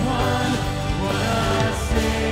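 Live worship band playing a Christmas worship song, with a male lead singer singing over the band.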